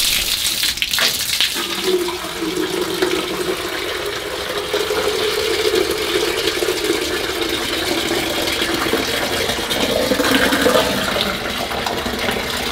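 Cow urine streaming down, first splashing on the ground and then, from about a second and a half in, pouring steadily into a plastic bucket held under it to collect the urine. The pitch of the pouring rises slowly as the bucket fills.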